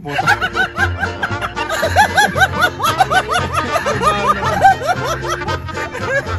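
Hearty laughter, a fast run of high 'ha' syllables about five a second, over background music.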